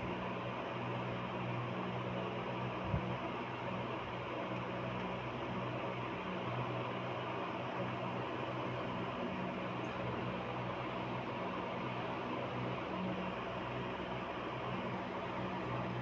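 Steady background hiss with a low hum, and one soft knock about three seconds in.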